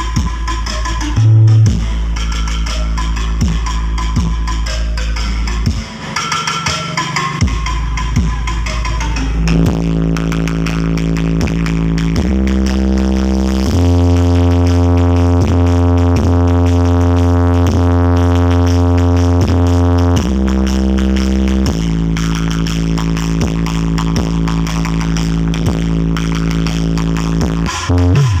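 Loud electronic dance music with heavy bass played through a large truck-mounted speaker stack. From about ten seconds in, long held bass notes take over for some twelve seconds before the beat returns.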